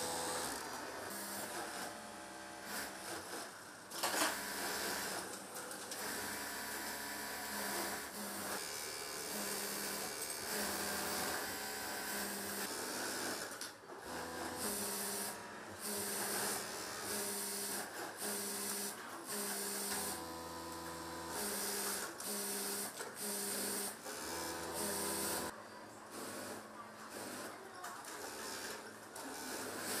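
Industrial sewing machines, an overlock serger and lockstitch machines, stitching in short runs that start and stop every second or two, with a motor hum that changes pitch as they speed up and slow down.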